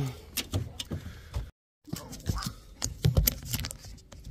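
Scattered clicks, knocks and light metallic jingling as a dog climbs the perforated metal steps into a semi truck's cab. The sound cuts out for a moment about a second and a half in.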